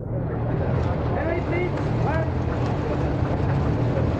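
Crowd of people talking at once, indistinct overlapping chatter, over a steady low rumble; it starts abruptly.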